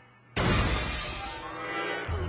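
A sudden loud crash-like dramatic sting hits about a third of a second in and rings out, fading slowly, with music sounding underneath.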